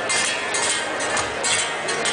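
Fandango music with strummed guitar and sharp percussive accents a few times a second; the singing has stopped.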